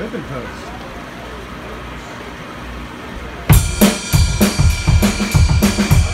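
Low bar-room murmur with faint talk, then about three and a half seconds in a live rock band comes in all at once: drum kit with cymbal and snare hits in a steady beat, under bass, electric guitar and keyboard.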